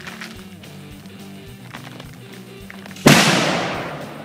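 Music with guitar playing. About three seconds in, a single sudden loud blast dies away over about a second.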